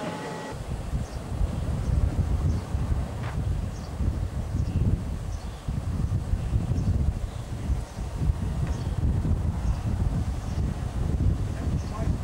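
Wind buffeting the microphone in uneven gusts: a low rumble rising and falling.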